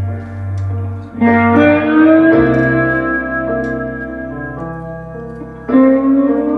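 Live instrumental band music: an electric guitar plays sustained notes that slide up in pitch over held keyboard chords and a bass line.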